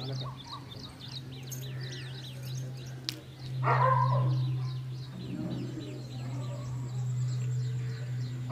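A dog barks once about halfway through, over small birds chirping over and over and a steady low hum.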